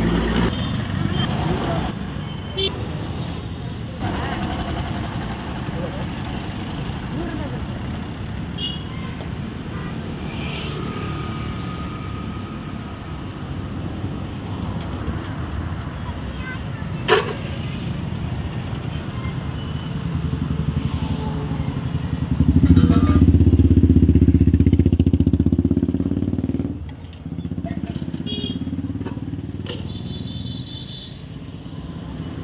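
Roadside street ambience: steady traffic noise with voices in the background, a single sharp click about halfway through, and a louder motor vehicle passing close by for about four seconds near the end.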